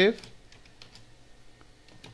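Typing on a computer keyboard: a run of faint keystrokes.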